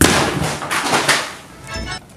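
A sudden noisy crash that fades away over about a second and a half, with a brief second burst of noise near the end.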